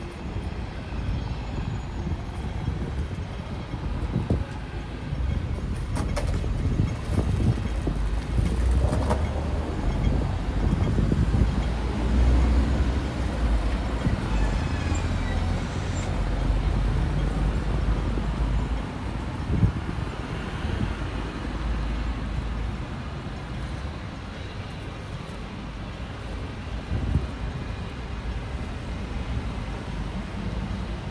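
Night street ambience of road traffic: a low vehicle rumble builds over the first several seconds, is loudest about twelve seconds in, and eases off in the last few seconds.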